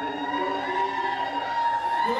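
Performance music in which a singer holds one long high note, rising slightly at first, over accompaniment.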